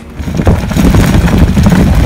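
Trike tyres rolling over a loose gravel track, a loud rough rumble with crackling grit, mixed with wind buffeting the microphone; it comes in sharply and builds within the first half second.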